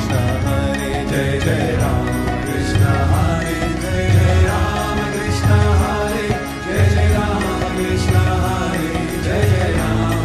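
Kirtan music: voices chanting a devotional mantra over a steady drum beat, about one beat a second.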